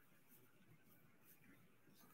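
Near silence: room tone in a pause of the reading.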